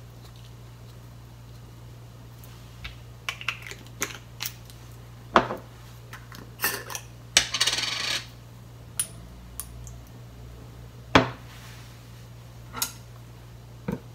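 Scattered light clicks, taps and knocks of spice containers handled on a countertop: a plastic-capped shaker closed and set down, a glass jar's lid unscrewed with a brief scrape near the middle, and a small metal spoon clinking against the glass jar.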